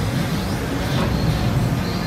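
Steady low hum of an XCMG battery-powered mini excavator's electric drive and hydraulic pump running while the boom and bucket are moved.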